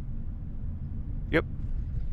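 Steady low road and engine rumble heard inside the cabin of a diesel vehicle cruising along a highway.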